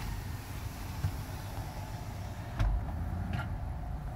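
A car driving slowly on an unpaved gravel track, heard from inside the cabin: a steady low road rumble with a few short knocks from bumps, the loudest about two and a half seconds in.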